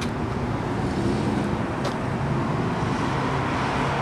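Road traffic passing: a steady rumble of engines and tyres, with one light click about halfway through.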